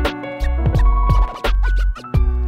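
Hip hop beat with a heavy kick drum, deep sub-bass, sharp drum hits and layered melodic samples. In the second half, turntable-style scratches bend up and down in pitch.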